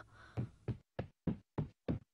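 Cartoon footstep sound effects of a child walking: about six short, even steps, roughly three a second.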